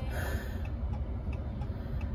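A car's turn-signal indicator ticking about twice a second over the steady low hum of the car's cabin.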